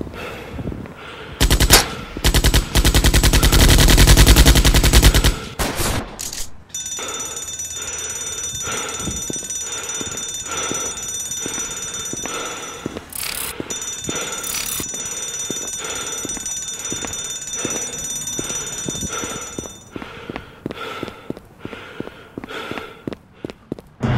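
Automatic gunfire sound effect: a loud burst of rapid shots lasting about four seconds. It is followed by a steady electronic alarm-like tone that pulses at an even beat for about thirteen seconds.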